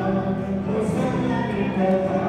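Congregation and choir singing a hymn together, voices holding long sustained notes.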